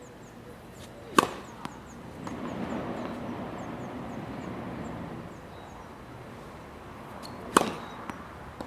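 Tennis racket striking the ball on two serves: two sharp, loud hits about six seconds apart, the first about a second in and the second near the end.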